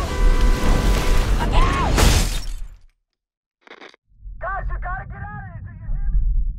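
Film-trailer sound design of a tornado striking a vehicle: loud wind roar over a deep rumble, with a few held tones and a shout, cutting to sudden silence about three seconds in. After a brief short sound in the silence, a voice comes in over a low rumble near the end.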